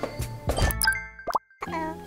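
Light background music with a short rising pop sound effect about halfway through, and a brief gap where the sound drops out.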